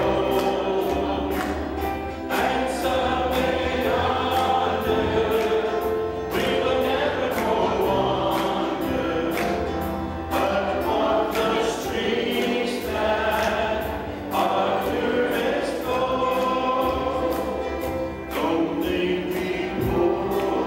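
Several voices singing a gospel hymn over instrumental accompaniment with a steady beat.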